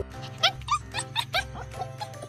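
Husky puppy giving a quick run of about eight short, high-pitched yips and whimpers over about a second, with quiet background music.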